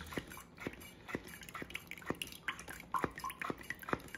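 Wacaco hand-pumped portable espresso maker being pumped, its piston making a faint click about twice a second while espresso is pressed through into the glass.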